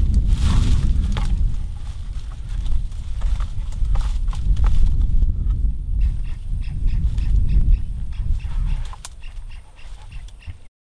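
Brambles and dry bracken crackling and snapping under footsteps as a wooden board is trodden down onto a blackberry thicket, over a steady low rumble. The crackling is strongest in the first half.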